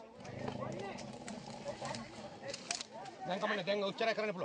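Men's voices calling out outdoors amid rustling and small knocks, with a low, held pitched sound lasting about a second and a half near the start.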